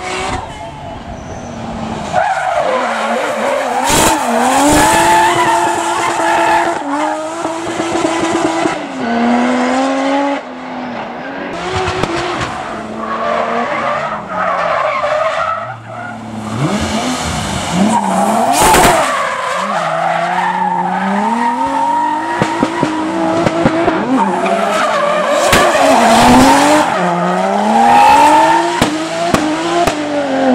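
Drift car sliding through a hairpin, its tyres squealing as the engine revs swing up and down again and again. Twice a sharp crack cuts through, about 4 seconds in and again past the middle.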